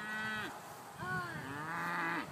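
Scottish Highland cattle mooing: a short moo at the start, then a longer one from about a second in.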